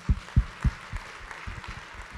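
Audience applauding, with four or five loud low thumps spaced about a quarter-second apart in the first second.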